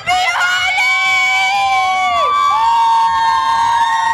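A group of girls cheering together in long, high-pitched held shouts. The first yell drops away about two seconds in and a second is taken up at once and held.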